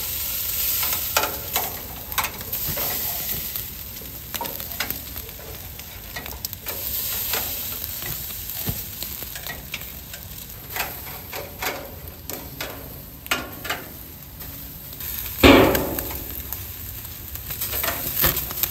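Heart, liver and kidney kebabs and melted fat sizzling over a hot grill, with frequent crackles and pops and the clink of metal skewers being turned. A louder burst stands out about fifteen seconds in.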